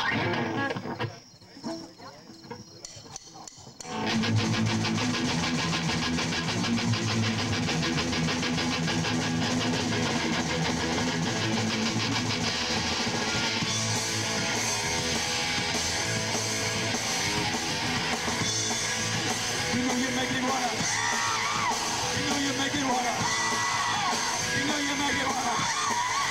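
Live rock band starting a song with electric guitar and drums. After a few quieter seconds, the full band comes in loudly about four seconds in and keeps playing.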